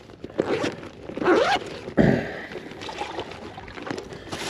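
A zip on a soft fabric tackle bag and the rustle and scrape of hands working in the bag, with a sharp knock about two seconds in.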